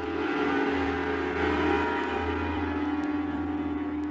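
Ambient electronic music from a DJ mix: long held, ringing synth tones like a gong or pad drone over a low rumble.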